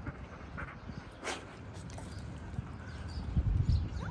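A dog and a person moving about on wood-chip mulch: soft footfalls and a brief rustle a little over a second in, with a cluster of heavier thumps about three and a half seconds in.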